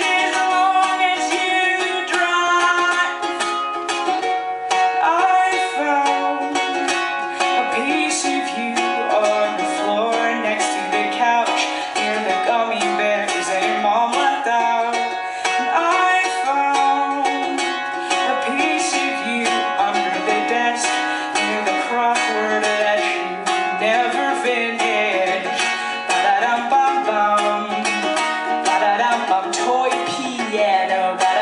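A woman singing live, accompanying herself on a steadily strummed ukulele.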